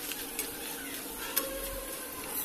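Thin potato strips deep-frying in hot oil in a kadai: a steady sizzle while a metal slotted spoon stirs them, with one sharp click a little past halfway.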